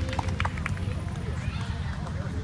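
The last few strums of ukulele and guitar as a song ends, then people talking in the background over a steady low rumble.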